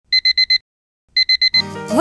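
Electronic alarm-clock beeping: two bursts of four quick high beeps, about a second apart. Music begins near the end.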